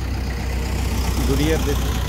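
A tractor's diesel engine idling steadily, a low even hum, with a faint voice about halfway through.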